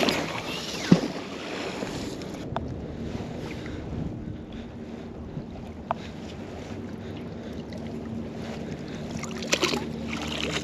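A thrown magnet-fishing magnet hitting the river with one sharp splash about a second in, then steady wind and water noise with a faint low hum while the rope is hauled back. A splash near the end as the magnet comes up out of the water.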